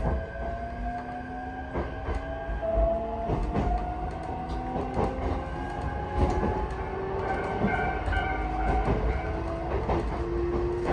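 Interior of an electric train running along the line: the traction motors whine in several tones that rise slowly for about six seconds as the train gathers speed, then hold steady, over a low running rumble. The wheels click irregularly over the rails.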